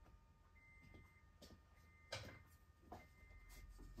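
Near silence with the faint high tone of a 2nd-gen Toyota Tacoma's in-cab warning chime sounding in a few short stretches as the key goes into the ignition, and a few light clicks, the clearest about two seconds in.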